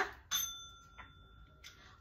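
A bell rings once: a clear, high ringing tone that starts suddenly and fades over about a second and a half. A faint click comes about a second in.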